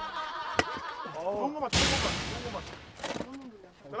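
Short exclamations in men's voices, with a sudden loud burst of noise a little under two seconds in that fades away over about half a second.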